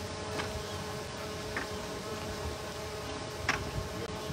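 A steady buzzing drone over a background hiss, with three brief high chirps, the last and loudest about three and a half seconds in.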